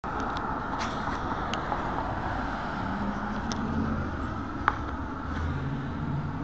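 Road traffic on a city street: a steady wash of passing-car noise, with a low engine hum coming in about halfway through and one sharp click near the end.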